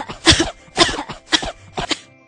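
A child's voice coughing in a run of short, sharp coughs, about two a second: a reaction to cigarette smoke.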